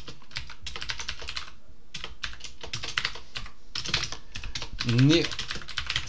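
Fast typing on a computer keyboard: a quick run of key clicks, with a short pause about two seconds in.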